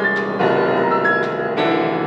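Grand piano played live: notes and chords are struck one after another and left to ring, with a strong new chord about halfway through.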